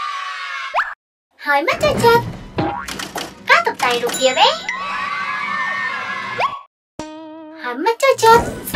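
Cartoon sound effects (boings, sliding whistles and a wobbling tone near the end) over children's music, with short bursts of a cartoon robot character's voice. The sound cuts out briefly twice, about a second in and shortly before the end.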